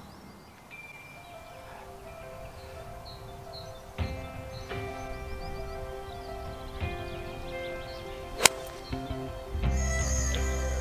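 Gentle background music with slow held chords, and about eight and a half seconds in a single sharp click of a 6 iron striking a golf ball off the tee.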